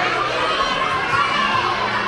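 Many young children's voices shouting together, overlapping and high-pitched.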